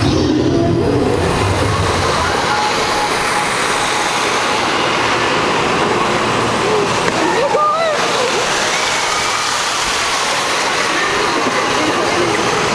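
Steady rushing wind and water noise on a tilting tumble-tower ride as it swings its riders, with a few short rising cries about two-thirds of the way through.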